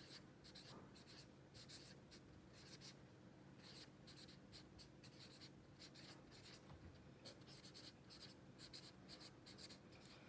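A pen writing on lined notebook paper: faint, short scratching strokes in quick runs, with brief pauses between words.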